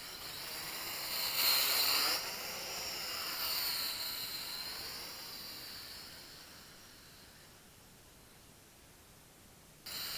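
MJX X400 mini quadcopter's motors and propellers buzzing with a high whine that wavers in pitch as the throttle changes. It is loudest a second or two in, fades away as the drone flies off, then is suddenly loud again just before the end.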